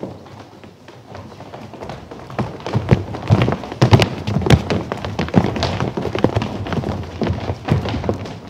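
Many children's feet running and stamping across a stage floor: a rapid, uneven clatter of thuds and taps that starts about two seconds in.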